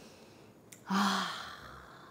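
A single long sigh, "haa...", starting about a second in with a brief voiced onset and trailing off into breath.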